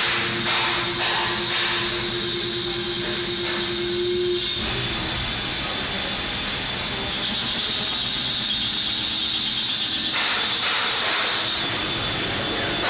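CNC lathe running under coolant: the coolant jet hissing steadily over the machine, with a steady hum that stops about four and a half seconds in, and the sound changing again about ten seconds in.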